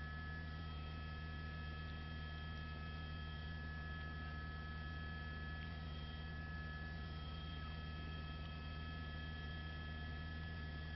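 Steady low hum with a few faint, unchanging high tones on a live news-helicopter audio feed. Nothing else rises out of it.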